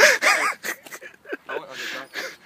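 A young man laughing: a laughing outburst in the first half-second, then short breathy gasps.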